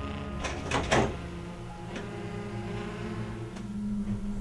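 Wooden office door being opened: two short sounds from the latch and door in the first second, over steady low background music.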